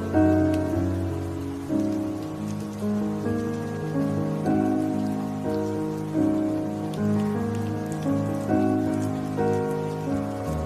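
Slow, gentle solo piano instrumental, notes and chords struck about once a second and left to ring, over a steady hiss of rain ambience.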